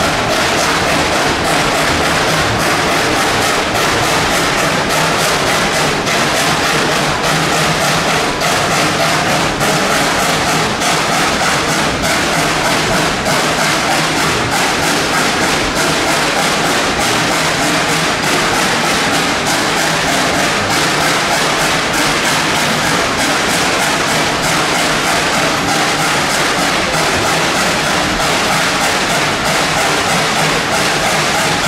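Narrow-gauge steam locomotive working along the line, its exhaust chuffing in a steady rhythm over the running noise of the train on the rails.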